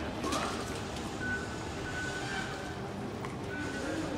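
Busy metro station concourse ambience: a steady wash of indistinct crowd voices and footsteps, with a few short, high, steady beeps.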